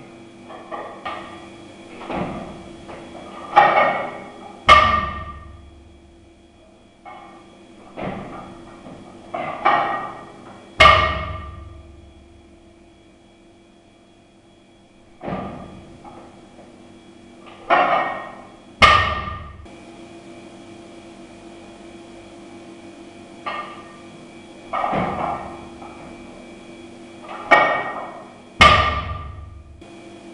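Loaded barbell with iron plates dropped onto a wooden lifting platform again and again: four landings, each a pair of hits about a second apart, the second a loud thud with the plates clanging. A steady low hum runs underneath.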